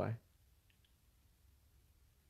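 A man's spoken word ends at the very start, followed by near silence broken only by two faint clicks a little under a second in.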